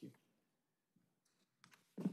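Near silence in a large meeting room after the end of a spoken "thank you", broken by a few faint clicks about a second in and again shortly after.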